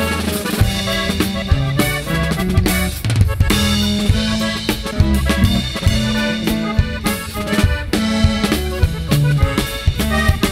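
Norteño band playing an instrumental break between verses: a Gabbanelli button accordion carries the melody over a steady drum-kit beat and a stepping bass line.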